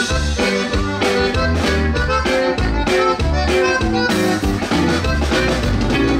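Live conjunto band playing an instrumental passage: button accordion carrying a quick melody over bajo sexto strumming, bass and drum kit with a steady beat.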